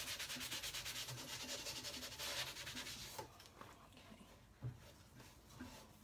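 Hand sanding of a chalk-painted wooden furniture leg, a light final sand: quick, even back-and-forth strokes. About halfway the strokes stop, giving way to quieter, sparser rubbing and one short knock.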